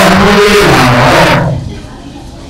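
A monk's voice speaking Burmese through a handheld microphone: one phrase of about a second and a half, then a pause.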